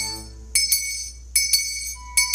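Altar bells shaken in short bright rings, roughly in pairs every three-quarters of a second, ringing as the monstrance is raised in blessing at Eucharistic benediction. A sustained keyboard chord dies away in the first half second, and a soft held note comes in near the end.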